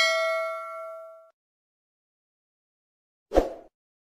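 Bell-like notification 'ding' sound effect, struck once and ringing with several clear tones that fade out about a second in. A short second sound effect follows near the end.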